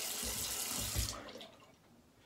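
Bathroom tap water running as a safety razor is rinsed under it, with a few soft knocks, then cut off about a second in.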